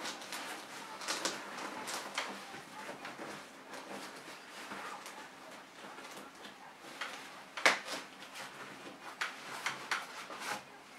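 Fabric rustling and small plastic clicks as a winter cover is worked onto an infant car seat carrier and its side fasteners pressed shut. There is a sharper click about three-quarters of the way through.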